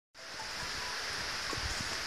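Steady outdoor hiss of field ambience, heaviest in the high range, fading in just after a brief silence, with a few faint ticks.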